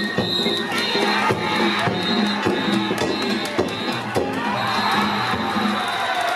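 Danjiri festival band of taiko drum and hand gongs playing a steady repeating beat, with ringing gong strokes, under a crowd of rope-haulers and onlookers shouting and cheering.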